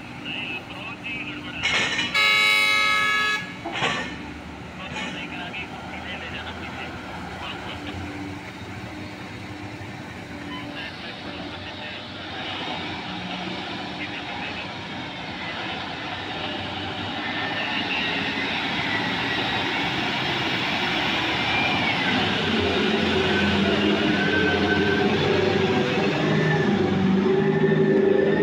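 A Cat mining haul truck sounds one loud horn blast, about a second and a half long, about two seconds in. Then its diesel engine grows steadily louder and rises in pitch as the loaded truck pulls away from the shovel and drives toward the microphone.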